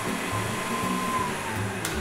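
KitchenAid stand mixer running steadily, its flat beater stirring dry bread-dough ingredients (flour, sugar, salt, yeast) in a steel bowl; a steady motor whir. Background music plays along with it.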